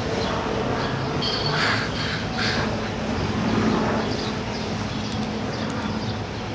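Birds squawking a few short calls over a steady bed of city noise, the calls clustered in the first half.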